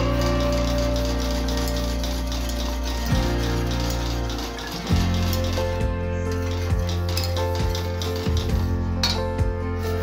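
Background music, with a wire whisk clinking irregularly against the sides of a stainless steel saucepan as custard is stirred, the clinks starting about three seconds in.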